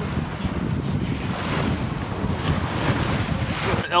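Wind buffeting the microphone, with the rattle of small wet pebbles and gravel as a hand sifts through them in a plastic basket.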